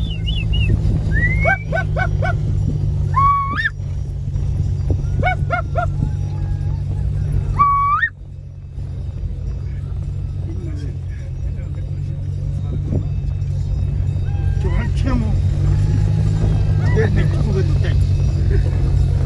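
Steady low rumble of a car driving over rough ground, heard from inside the cabin. Over it come a handful of short, high, sliding shouts in the first half, and a few fainter ones near the end.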